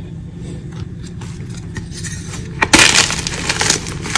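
Block of gym chalk crushed in the hands: a few faint crumbly ticks, then, about two-thirds of the way in, a sudden loud crisp crunch as a lump breaks, followed by about a second of crackling crumble.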